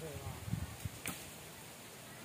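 A single short, sharp click about a second in, with a few soft low knocks around it, over a quiet outdoor background.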